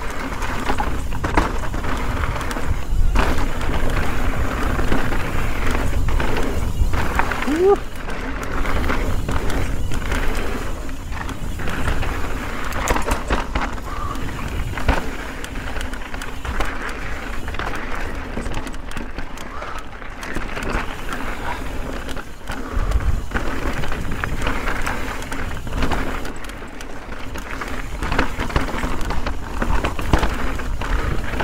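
Mountain bike riding fast over rocky, loose desert trail: tyres crunching on gravel and rock, with a steady rattle and frequent sharp knocks from the bike over bumps, and wind rumble on the helmet-camera microphone.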